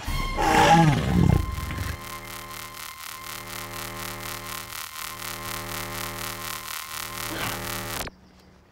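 A roar sound effect, falling in pitch over about a second and a half, as a novelty birthday candle that roars is blown out. It is followed by a steady, shimmering magic sound effect with a fast flutter, which breaks off briefly a few times.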